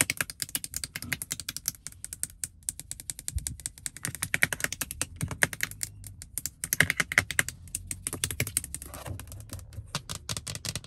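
Long fingernails tapping rapidly on a car's plastic interior door trim: a dense, irregular patter of light clicks, with louder flurries in the middle and later part.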